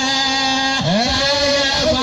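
A man's voice singing long held notes into a microphone, amplified through a loud PA system, with a brief dip and slide in pitch about a second in and again near the end.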